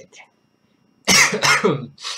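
A man coughing twice in quick succession, about a second in, from an itchy throat.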